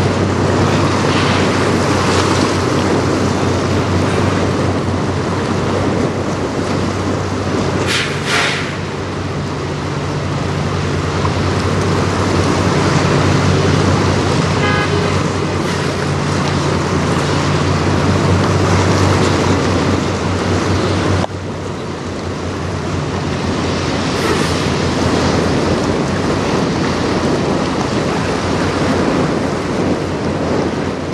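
A large lake freighter's machinery drones in a steady low hum as the ship passes close by, under a broad wash of wind and water noise. A brief sharper rush comes about eight seconds in.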